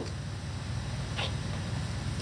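Ratchet and long socket extension being worked down into an engine bay, giving one light tap against metal about a second in, over a steady low hum.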